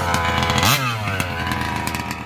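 Small two-stroke petrol engine of a 1/5 scale RC buggy running. About two-thirds of a second in it revs once, rising quickly and falling back to a steady lower pitch.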